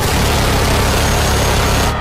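Minigun firing sound effect: a loud, continuous stream of rapid fire that cuts off suddenly at the end.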